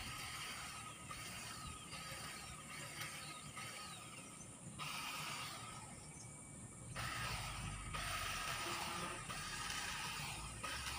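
Electric grass trimmer running as it cuts, a steady whir with a faint whine. It stops for about two seconds near the middle and starts again.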